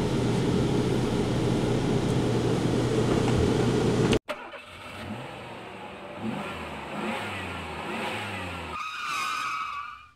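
Steady low drone with a hum inside a parked tour bus, cut off abruptly about four seconds in. It is followed by a vehicle engine revving in repeated rising sweeps, with a higher tone joining near the end.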